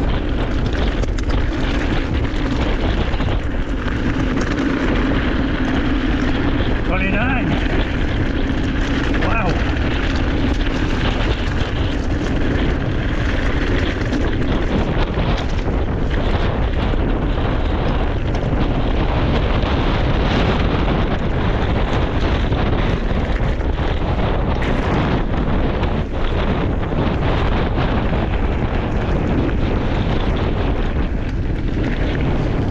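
Wind buffeting the microphone over the continuous crunch and rumble of mountain bike tyres rolling on a gravel track, with a steady low hum through the first half.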